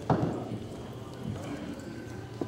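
A single sharp knock with a brief ring just after the start, over indistinct background voices.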